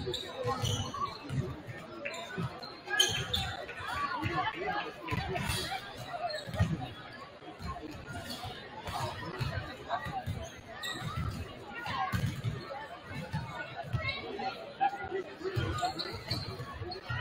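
Several basketballs bouncing on a hardwood gym floor, a stream of irregular low thuds, over continuous crowd chatter echoing in a large gymnasium.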